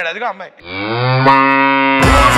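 A single long, low moo like a cow's. It dips slightly in pitch as it starts, about half a second in, then holds steady to the end.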